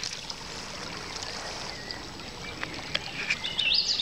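Steady rush of flowing river water. A bird starts singing near the end, a run of short rising notes.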